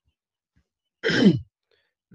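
A man's voice making one brief vocal sound, falling in pitch, about a second in, after a moment of near silence.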